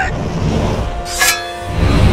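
Action film score playing under a fight, with one sudden, sharp fight sound effect about a second in.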